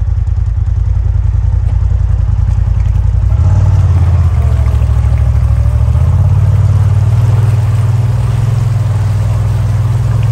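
Off-road side-by-side engine running as the vehicle wades through a flooded creek channel, rising in pitch and getting louder about three and a half seconds in as the throttle opens, with water washing around the tyres.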